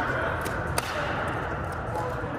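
A pickleball being struck during play: two sharp pops about a third of a second apart, the second louder, over a background murmur.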